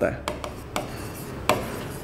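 Marker pen writing on a board: light scratching strokes with a few sharp taps of the tip, the loudest about one and a half seconds in.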